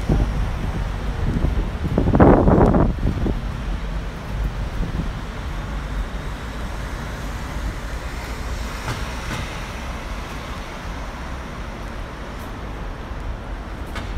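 City street traffic: a red double-decker bus passing close by, loudest for about a second around two seconds in, over a steady low rumble of road traffic.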